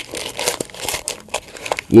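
Crinkling and crackling of a Minecraft mini-figure blind-box chest package being handled and worked open by hand, in small irregular bursts.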